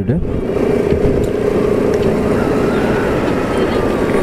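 Motorcycle engine running steadily at road speed, heard from the bike itself with wind rush on the microphone. A faint tone slowly falls in pitch through the second half.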